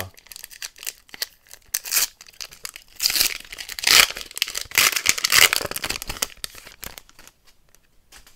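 Foil wrapper of a 2024 Panini Score football card pack being torn open and crinkled by hand, the loudest tearing and crackling about three to five and a half seconds in, then lighter rustling as the cards come out.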